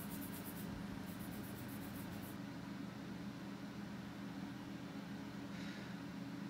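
Vine charcoal hatching lightly on drawing paper: a quick run of faint, evenly spaced scratchy strokes for the first two seconds or so, over a steady low hum.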